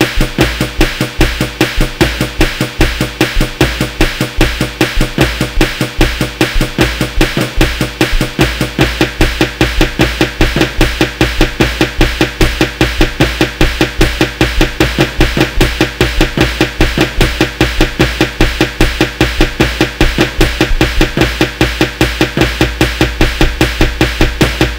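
Instrumental hip-hop 'type beat': a fast, even drum pattern over deep bass and sustained pitched backing.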